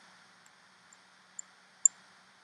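Quiet room hiss with a faint low hum, broken by four brief, high-pitched ticks about half a second apart, the last one the loudest.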